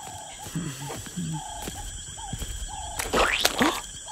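Night-time animal calls: short pitched notes repeating about every half second, with a louder noisy burst about three seconds in.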